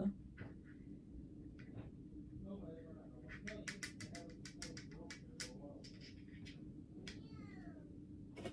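A cat meowing faintly a few times, one call falling in pitch near the end. A run of quick clicks sounds in the middle.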